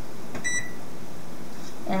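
Electronic wall oven control panel giving a single short, high beep about half a second in as a keypad button is pressed.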